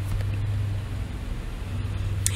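Steady low electrical hum with a faint hiss under it, heard in a gap in the narration.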